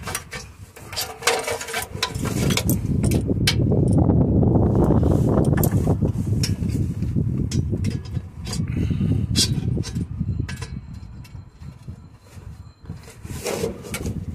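Small clicks, knocks and scrapes of hands and metal parts as a replacement DPF vaporizer is lined up and threaded in by hand under a van. A loud, low rumble of unclear origin swells for several seconds in the middle, dies down, and comes back briefly a few seconds later.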